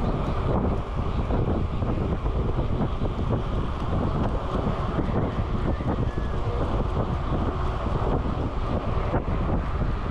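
Steady wind rushing over the microphone of a handlebar-mounted camera on a bicycle riding at a fast pace.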